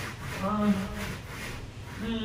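A wordless, drawn-out vocal sound, held for about half a second, begins about half a second in. It sits over a steady rubbing, scraping noise.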